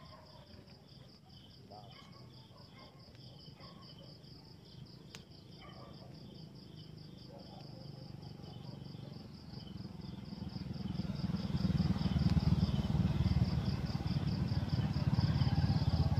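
Crickets chirping in rapid, even pulses throughout. From about ten seconds in, a low rumbling noise swells and becomes louder than the crickets.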